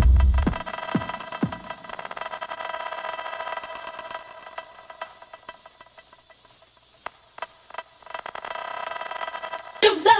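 Techno mix in a breakdown: a kick and falling synth sweeps stop about a second and a half in, leaving a sustained synth chord over a faint hiss. A sung vocal comes in at the very end.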